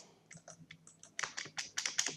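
Computer keyboard typing: a run of separate key clicks, sparse and faint at first, then louder and quicker in the second half.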